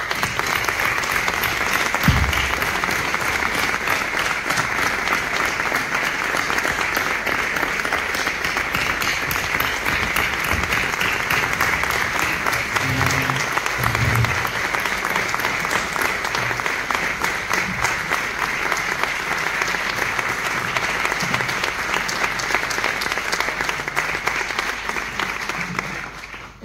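Audience applauding steadily, a dense, even clapping that holds without a break.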